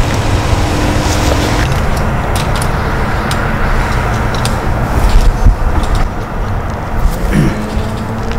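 A loud, steady low rumble with a faint hum running under it.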